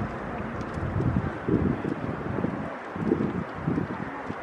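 Wind buffeting the microphone in irregular low gusts over a steady outdoor hiss.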